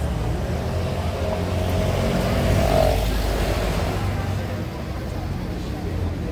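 A motor vehicle's engine running in the street, its low hum swelling to a peak about halfway through and then easing off, with passersby's voices over it.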